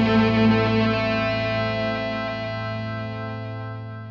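A rock band's final chord, with guitar, held and ringing out, fading steadily as the song ends.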